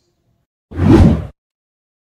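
A whoosh transition sound effect: one swell lasting just over half a second, about midway through, as the picture cuts to the end screen.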